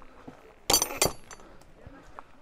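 Two sharp metallic clinks about a third of a second apart, the first leaving a brief high ring.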